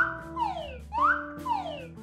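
Background music cue: a sliding note that rises quickly and then falls away, twice about a second apart, over steady held low notes.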